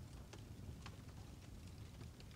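Near silence with a few faint, sharp clicks as the DJI Osmo Pocket 3's flip-out screen is rotated by hand.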